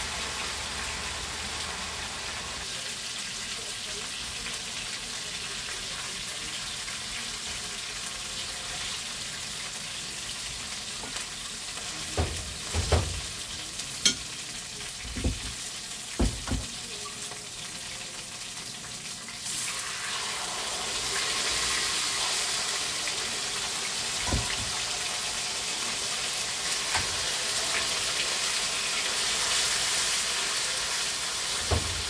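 Pork pieces sizzling as they brown in hot oil in a stainless steel frying pan, with a few sharp utensil knocks against the pan near the middle. The sizzling grows louder about two-thirds of the way in as more pork goes into the hot oil.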